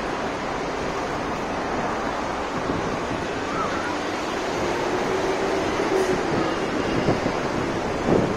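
Steady wash of road traffic passing below a footbridge, mixed with wind on the microphone.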